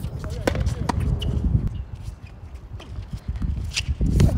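Tennis racket strikes: a sharp hit on the ball about half a second in, a couple of lighter knocks around a second in, and a flat serve struck just before the end. A steady low rumble runs underneath.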